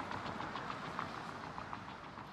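Faint roadside traffic noise, a vehicle going by and slowly fading.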